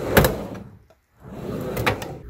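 Two whoosh sound effects under an on-screen title card. The first swells sharply just after the start and dies away. The second builds from near silence after about a second and peaks just before the end.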